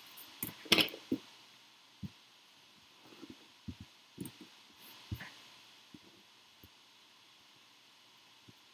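Light desktop handling noises: a few sharp clicks and knocks close together at first, then scattered soft knocks and taps as hands move things about on the table and take hold of the USB cable plugged into an Arduino Uno.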